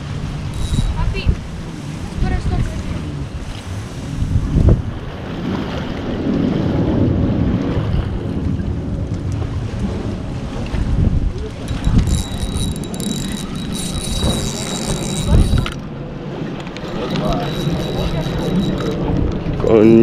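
Wind rumbling on the microphone while a spinning reel is cranked to bring up a hooked mangrove snapper. A high, scratchy sound runs for a few seconds about twelve seconds in.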